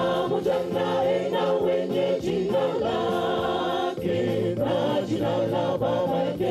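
Church youth choir of mixed voices singing together into handheld microphones, the voices going on without a break.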